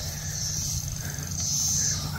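Steady chirring of insects in the summer grass, a high even buzz, over a low steady rumble.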